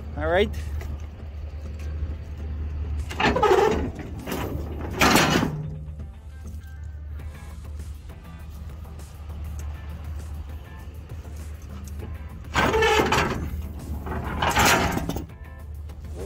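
A heavy truck engine idling with a steady low hum. Four louder bursts of noise, each about a second long, come in two pairs: one pair a few seconds in and one pair near the end.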